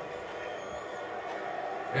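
Low, steady murmur of a football match broadcast playing on a television, with faint voices in it.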